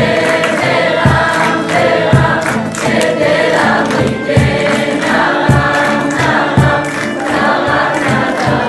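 Mixed choir of uniformed soldiers, men and women, singing a Persian love song together over a steady beat that lands about once a second.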